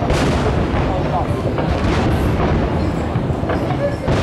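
New Year's Eve fireworks going off, a dense run of deep booms and rumbling echoes with a sharp burst right at the start.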